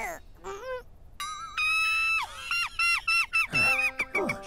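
Cartoon soundtrack of high-pitched squeaky tones: a few quick gliding squeaks in the first second, then a run of short, high held notes, each bending down at its end.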